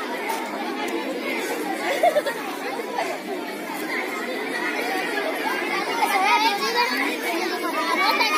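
Many children talking at once: a steady, overlapping babble of voices with no single speaker standing out.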